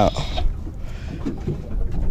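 Wind buffeting the microphone, a low irregular rumble, with faint voices in the background.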